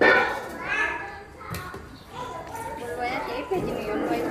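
People talking, with a child's voice among them, and a single short click about one and a half seconds in.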